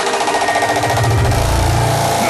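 Frenchcore/hardcore electronic dance music: a rapid, machine-like roll of beats, with a deep bass swelling up from about a second in.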